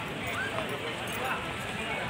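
Indistinct talk of nearby people mixed into a steady background hubbub, with no single sound standing out.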